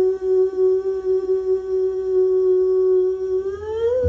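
A female singer holds one long sung note with the band almost silent beneath her; near the end the note slides upward in pitch.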